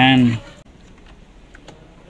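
A short voiced sound from a man at the very start, then a few faint, light clicks and taps of a hand handling the plastic parts and lever of an opened electric water heater.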